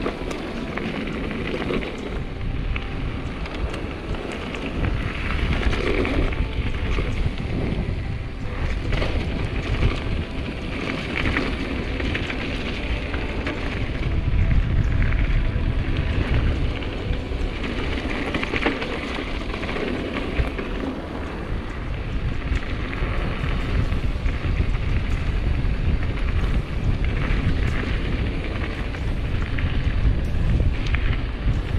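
Mountain bike rolling fast down a gravel road: tyres crunching and crackling over loose stones, with the bike rattling and wind buffeting the action-camera microphone. The wind rumble swells about halfway through and again near the end.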